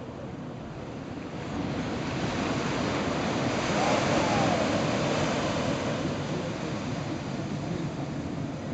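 Ocean surf washing onto the beach: a wave's wash swells about a second and a half in, is loudest around the middle, then eases off.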